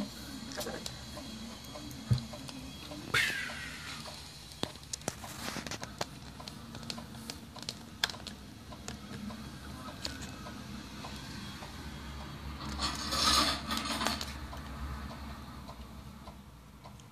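Small tool and handling noises in an opened Spektrum DX7S radio transmitter: scattered clicks, taps and scrapes of a small screwdriver and fingers on the plastic case and circuit board. A sharp knock comes about two seconds in, and a longer, louder noise comes about thirteen seconds in.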